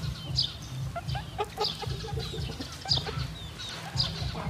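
Domestic chickens clucking, with short high chirps from a small bird about once a second.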